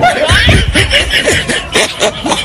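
A group of young men laughing and chuckling over each other in short laughs.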